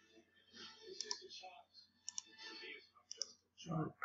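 Computer mouse clicks, a few short sharp ones spaced about a second apart, some in quick pairs of press and release, over a faint background murmur.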